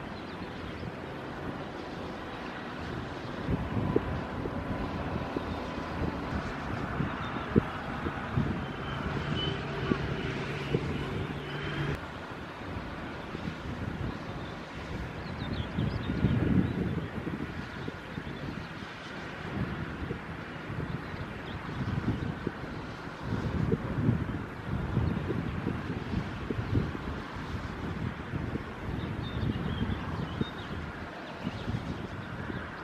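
Wind buffeting the microphone in gusts, with a low rumble that swells several times over a steady engine drone from the ship and tugs.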